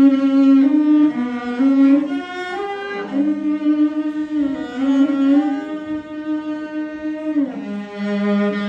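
Two morin khuur (Mongolian horsehead fiddles) bowed together, playing a slow melody of long held notes that slide from one pitch to the next.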